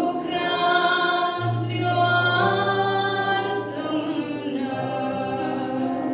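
A woman singing a slow Christian song through a church PA, holding long notes over sustained low accompaniment.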